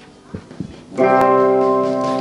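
Instrumental intro to a choir song: a few soft plucked notes, then about a second in a loud, full chord is struck and held.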